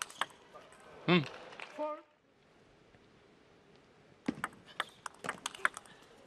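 Table tennis ball clicking off the table and the players' bats in a rally: a run of sharp clicks, several a second, starting about four seconds in after a short hush.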